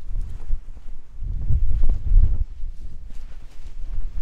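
Wind buffeting the microphone as a gusty low rumble that swells about a second in, over footsteps on bare rock.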